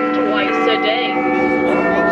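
Big Ben–style clock bell chimes, played back at the Lego Big Ben model: several bell tones ringing on and overlapping, with a new strike near the end.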